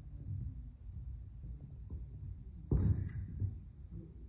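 Feet thudding and stamping on a wooden hall floor during steel sword sparring, with a sharp clash of steel rapier and smallsword blades ringing briefly about three seconds in.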